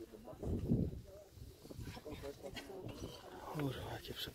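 Indistinct voices of people talking in short snatches, too unclear to make out words.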